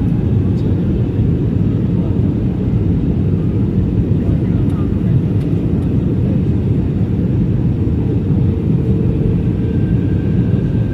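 Airliner cabin noise heard at a window seat on the descent to land: a steady, dense low rumble of engines and airflow that holds even throughout.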